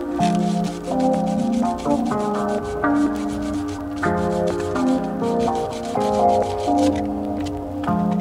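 Emery cloth (100-grit sandpaper) rubbing back and forth on a plastic water pipe in quick, repeated strokes, over background music with sustained notes.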